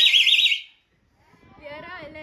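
Plastic toy flute blown hard, giving a shrill warbling tone that trills rapidly in pitch and stops about half a second in. After a brief silence, a man laughs near the end.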